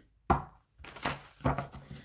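A deck of oracle cards being shuffled by hand: a few short, sharp card clacks, the loudest about a third of a second in.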